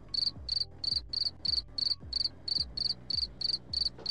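Crickets chirping in a steady, even run of short high chirps, about three a second, starting and stopping abruptly: the stock 'awkward silence' cricket sound effect.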